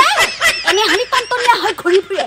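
A woman laughing in quick snickers, run together with her speech.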